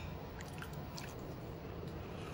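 Faint chewing, with a few soft clicks early on, as pork rib and lotus root are eaten.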